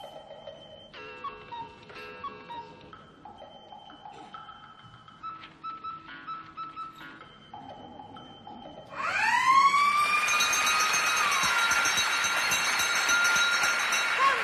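Quiz-show countdown music of soft, repeating electronic tones. About nine seconds in, a much louder siren-like signal sweeps up in pitch and holds over a rush of noise, marking the end of the answer time.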